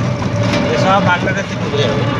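A small open-sided vehicle in motion: steady ride noise with a constant tone running under it, and a person's voice briefly in the middle.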